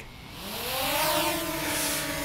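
DJI Mini 2 quadcopter's propeller motors spinning up from rest as it takes off, the whine rising in pitch over about the first second and then holding steady as it hovers.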